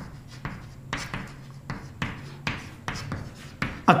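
Chalk writing on a chalkboard: a string of short, irregular scratchy strokes and taps, about nine of them, as words are written out.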